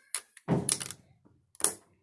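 Snap Circuits parts being pressed onto the plastic base grid, giving short, sharp snapping clicks near the start and about one and a half seconds in, the second the loudest. A short "wow" is spoken about half a second in.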